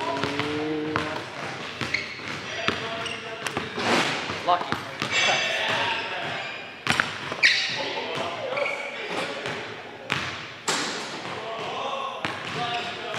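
Basketball bouncing on a hardwood gym floor during play: irregular thuds as the ball is dribbled and shot.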